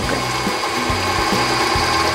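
KitchenAid stand mixer running steadily, its beater mixing a soft sweet-potato and Greek-yogurt frosting in the stainless steel bowl, with a thin steady whine from the motor.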